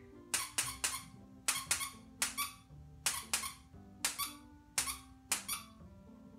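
Short, sharp squeaky clicks in quick groups of two or three, over a dozen in all, over faint background music.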